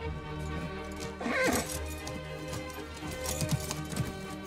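Sustained film-score music, with a horse whinnying briefly about a second in.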